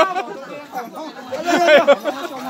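Only speech: people talking and chattering, with no other sound standing out.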